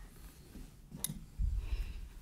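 A small metal prep cup is set down on a stone countertop with a single sharp click about a second in, followed by a brief low bump.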